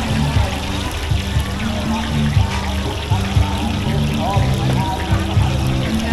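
Music with a bass line playing over crowd chatter, with a steady hiss of oil frying on a large flat griddle of hoy tod.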